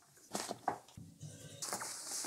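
Blackout fabric rustling and spring clamps clicking as the curtain material is clamped up over a window, with a couple of short clicks in the first second and a louder hissing rustle near the end.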